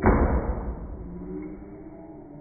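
A sweet potato pie in a foil tin smashed into a man's face: one sudden smack that dies away over about a second.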